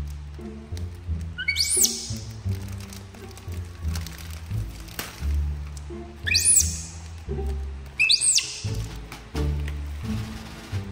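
Background music with a repeating bass line, broken three times by short high whistling chirps that sweep up and fall back.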